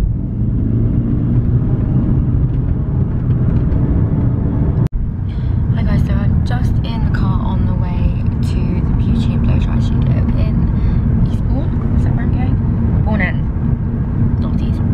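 Steady low rumble of a car's engine and tyres heard from inside the cabin, from the back seat, dropping out for an instant about five seconds in.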